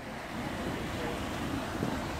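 Steady wind noise on a phone's microphone.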